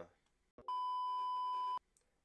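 A short click, then a single steady beep at about 1 kHz lasting just over a second that cuts off cleanly. It is a censor-style bleep edited over a fumbled line.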